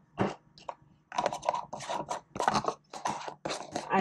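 A black plastic leak-proof Ball lid being screwed onto a glass mason jar: a knock, then a run of short, rough scraping strokes of the plastic threads on the glass, about three a second.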